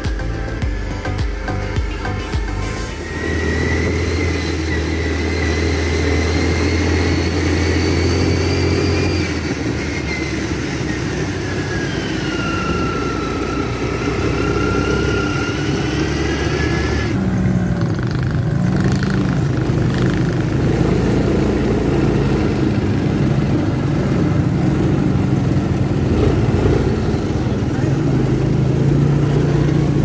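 Quad bike engines running as the bikes ride along, their pitch rising and falling with the throttle. Music plays for the first few seconds, and the sound changes abruptly partway through.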